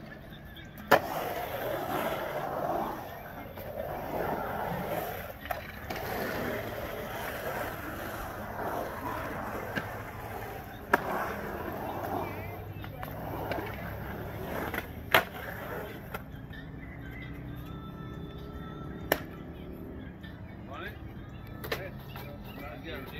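Skateboard wheels rolling and carving around a concrete bowl, a steady rolling rumble that fades after about 16 seconds. Four sharp clacks of the board striking the concrete come near 1, 11, 15 and 19 seconds.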